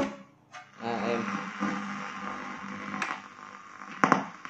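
Sharp GX-55 combo stereo switched over to its radio: the music stops as a button is pressed, then a click and the radio comes in with hiss, mains hum and a faint broadcast voice, with another sharp click about three seconds in as its controls are worked.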